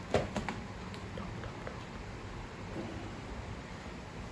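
White cardboard phone box being handled as its sleeve and lid come off: a quick cluster of sharp taps and scrapes in the first half-second, then only a few faint handling ticks.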